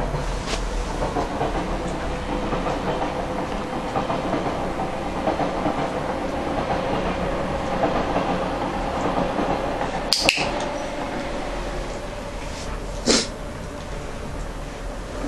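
A handheld box clicker snapping twice in quick succession, press and release, about ten seconds in: the training marker for the dog touching the offered hand. Another sharp click comes near the end, over a steady background hum.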